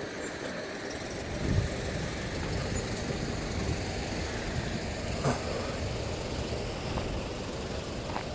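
Steady rumble of passing road traffic, with a short knock about five seconds in.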